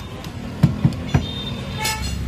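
Three sharp knocks a little past a second in, then a short car-horn toot near the end, over steady background noise.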